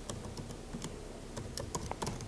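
Typing on a computer keyboard: a quick, irregular series of soft key clicks as a short word is typed.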